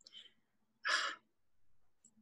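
A woman's short breathy sigh about a second in, a sigh of exasperation at a hitch. A faint breath comes just before it.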